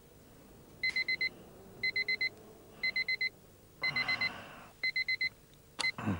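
Small electronic alarm clock beeping in quick groups of four, about one group a second. Near the end a click cuts the beeping short as its button is pressed to switch it off.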